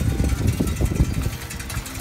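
Low, uneven rumbling and knocking from a four-wheeled surrey pedal cart rolling along a path, full of short irregular knocks.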